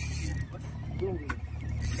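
A fishing boat's engine running with a steady low hum. There is a rushing hiss in the first half-second and again near the end, and a short vocal sound about a second in.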